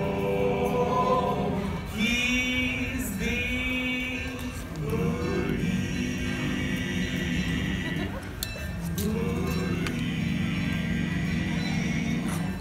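Barbershop quartet singing wordless a cappella chords in close harmony, in held phrases with short breaks. About two seconds in, a high voice wavers briefly above the chord.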